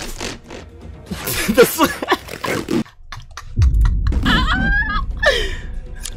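A man laughing, mixed with voices and background music.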